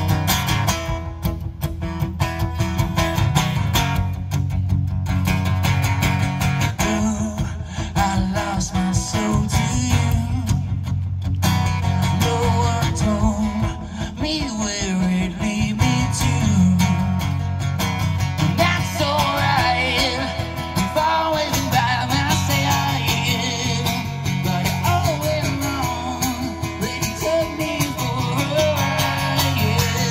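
Live rock song on an amplified acoustic guitar strummed through a pedal board, with a man singing over it from a few seconds in.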